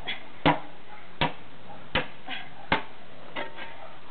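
Shovel blade chopping at frozen, iced-over dung on hard ground: four sharp strikes about three-quarters of a second apart, with a few fainter knocks between them.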